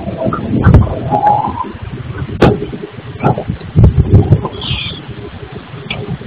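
Irregular low thumps and knocks from a granite stone workshop, with a few sharp clicks, one of them loud about two and a half seconds in.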